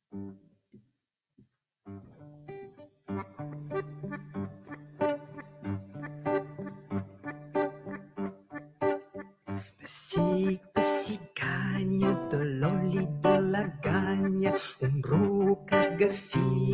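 Spanish guitar and diatonic accordion playing the instrumental introduction to a Catalan folk song. It opens with a few sparse plucked notes, settles into steady playing over held low notes, and grows fuller and louder about ten seconds in.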